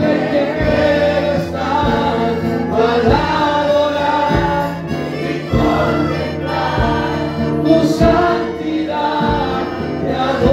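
A congregation singing a Spanish worship song together, with amplified instrumental accompaniment and a low beat about once a second.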